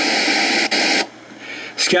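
Steady static hiss from a noisy audio recording being played back, with a single click in it, cutting off suddenly about a second in; a man's voice starts right at the end.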